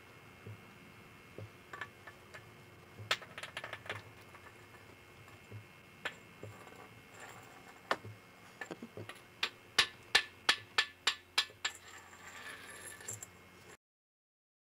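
Sharp metallic taps and clinks of a golf club head knocking against the pavement, scattered at first, then a quick even run of about three taps a second near the end.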